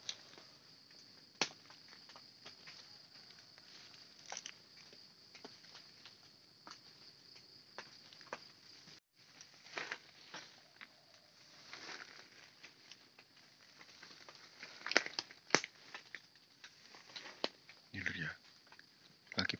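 Footsteps crunching and rustling through dry leaf litter and undergrowth: scattered light crackles, with a few sharper snaps about three seconds before the end. A steady high-pitched insect chorus runs underneath.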